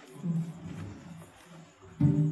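Deep male voices chanting together in short, repeated low phrases.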